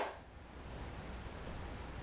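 Quiet room tone between takes: a steady low hum and faint hiss.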